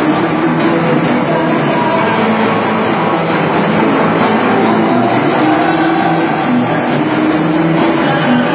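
Live rock band playing loudly on a stage: electric guitars over a drum kit, with repeated cymbal and drum hits.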